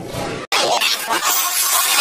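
The audio breaks off abruptly about half a second in. A loud, harsh crashing, shattering noise, like breaking glass, then runs on, its energy mostly in the high end.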